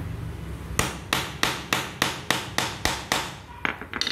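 A hammer striking a steel hollow hole punch, about nine sharp blows at three to four a second, driving it through paper into a wooden block to cut a hole; two lighter knocks follow near the end.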